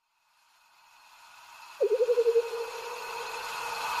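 Logo-intro sound effect: after a moment of silence, a rising whoosh swells, and about two seconds in a wavering tone with a fast pulse joins it.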